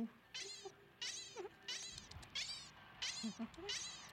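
A cartoon rabbit's squeaking: about six short, high-pitched, falling squeaks in an even rhythm, roughly one every two thirds of a second, a call for attention.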